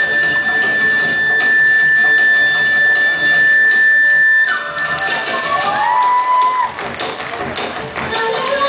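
A live Nepali folk-instrumental band playing. One melody instrument holds a single long high note for about four and a half seconds, then plays a few short sliding notes, over bass guitar and hand drumming. The music gets quieter near the end.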